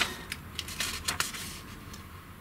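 Light handling noise: a few short clicks and rustles that fade away over the two seconds.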